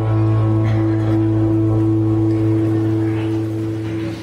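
Live church worship band holding a sustained final chord with guitars and bass guitar, ringing steadily and dying away near the end.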